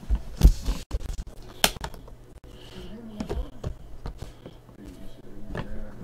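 Sharp clicks and knocks of hands opening an aluminium card case: a utility knife finishes slicing the seal sticker in the first second or two, then the metal latches are flipped open.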